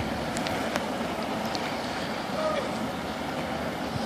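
Steady rushing noise of the S.S. Badger car ferry manoeuvring into its slip, its propeller wash churning the water, with an even level throughout.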